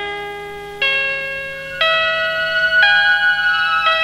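Instrumental break in a Somali song: slow, bell-like keyboard notes, a new one struck about once a second and each ringing on until the next.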